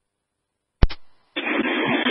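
Fire department radio channel heard through a scanner: silence, then a sharp squelch click a little under a second in, and about half a second later a steady hiss of static as the next transmission opens.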